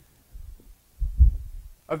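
Two low, muffled thumps, the second and louder one about a second in, followed right at the end by the first syllable of a man's speech.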